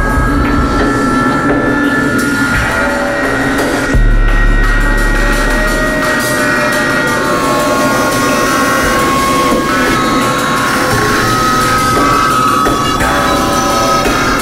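Jungle drum and bass music with drums under long held high synth tones; a deep sub-bass note comes in about four seconds in.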